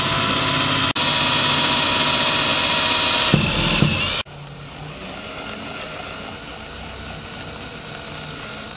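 DeWalt Atomic cordless drill/driver running a combination drill-and-tap bit into a steel switch box, cutting and threading a 10-32 ground-screw hole. The motor runs loud and steady, cuts out for an instant about a second in, then about four seconds in drops to a quieter, steady run.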